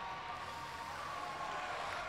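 Steady hiss of background ambience in a large hall, with a faint steady tone and no distinct event.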